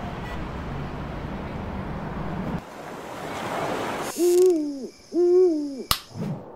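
Owl hooting twice, two arched hoots about a second apart, after a soft rushing hiss that swells and fades. A sharp click comes just before the end.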